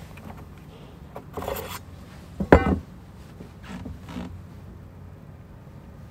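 Handling noises while a caught bass is being measured on a boat deck: a brief scraping rustle, then one sharp knock about two and a half seconds in, the loudest sound, and two softer knocks a little later.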